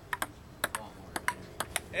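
Table tennis rally: a ping-pong ball clicking sharply off the table and the paddles, about eight clicks in four quick pairs, roughly one pair every half second.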